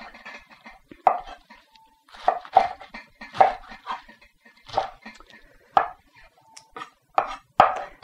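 Kitchen knife chopping Swiss chard on a wooden cutting board: a series of short knocks at uneven intervals, some of them bunched in twos.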